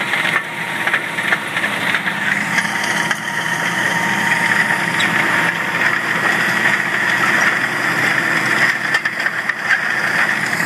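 John Deere tractor engine running steadily under heavy load while pulling a Simba X-Press cultivator, heard from inside its cab, with a constant high-pitched whine over the engine.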